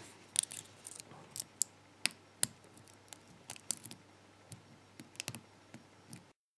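Lock pick and tension wrench working the pin tumblers and plug of an ABUS Titalium padlock: small, sharp metallic clicks at irregular intervals, a dozen or so.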